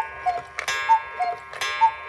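Ticking-clock sound effect for a time-skip card: a tick-tock that alternates a higher and a lower tick, with a sharper click about once a second, over a steady held tone.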